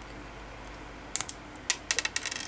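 Small sharp clicks of hard plastic model-kit parts as a rifle accessory is pressed and pegged into a figure's hand, a quick run of about five clicks in the second half.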